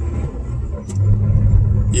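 Low rumble of a car and its road noise heard from inside the cabin while driving, growing louder about halfway through, with one brief click a little before that.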